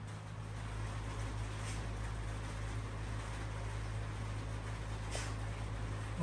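Steady low machine hum over a background hiss, with one faint brief click about five seconds in.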